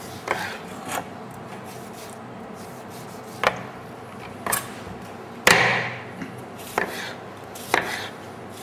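A knife cutting food on a cutting board: about eight separate, irregularly spaced strokes, the loudest about five and a half seconds in.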